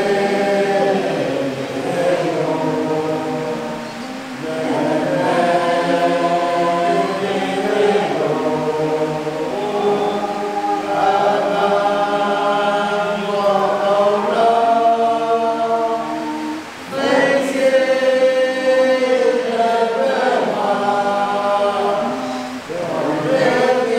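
A men's choir singing a song together without instruments, in long held phrases with short breaths between them about four seconds in and again near seventeen seconds.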